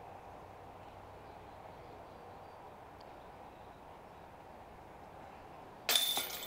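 Faint, steady outdoor background noise of a wooded course, with a faint high chirp about halfway through. A sudden, much louder sound starts right at the end.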